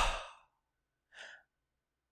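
A man's loud sighing out-breath that fades within the first half second, then a short, faint breath about a second later.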